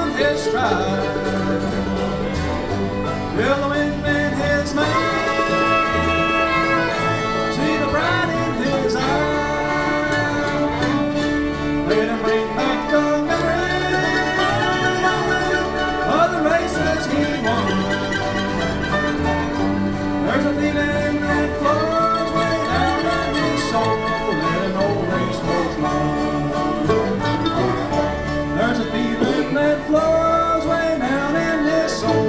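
Acoustic bluegrass band playing an instrumental break, a fiddle carrying the sliding melody over strummed acoustic guitars.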